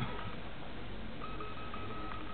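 Electronic beeping: a steady high tone chopped into short beeps, heard briefly at the start and again from just past halfway, over the hum of a room.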